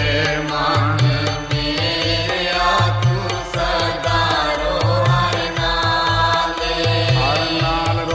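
Sikh devotional kirtan: a voice holds long, wavering melodic notes over sustained reed-organ chords. A repeating low drum beat runs under it.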